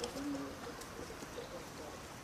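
A bird cooing once, a short low call in the first half-second, with a faint click just before it.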